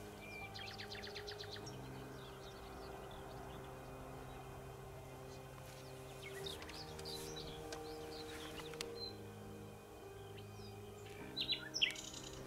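Soft background music of slow sustained chords, with wild birds chirping over it: a quick run of repeated notes early on, scattered calls in the middle, and a burst of chirps near the end.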